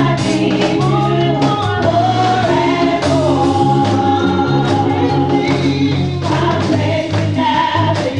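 Gospel choir singing with band accompaniment: held low bass notes under the voices and a regular beat.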